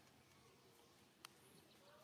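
Near silence: faint outdoor ambience, with one sharp click a little past the middle.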